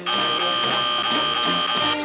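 Electronic warning-buzzer sound effect: one steady, harsh tone with bright overtones that starts abruptly and cuts off after about two seconds, over background music.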